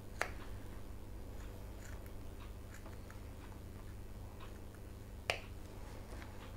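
Small sewing snips cutting into the fabric and interfacing of a zipper-pocket box in short strokes: faint snipping clicks, with a sharper snip just after the start and a louder one near the end.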